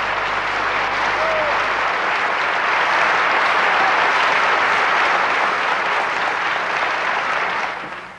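Audience applauding at the end of a song, loudest midway and fading out near the end.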